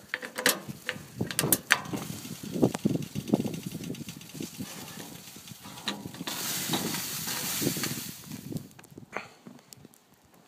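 Clatter and knocks of a small metal kettle being handled on a barbecue's grill grate, with a steady hiss for about two seconds past the middle; it grows much quieter near the end.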